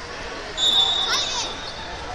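A high, steady whistle tone sets in suddenly about half a second in and holds for over a second, echoing in a large gym hall. Partway through, a few quick rising squeaks cut across it.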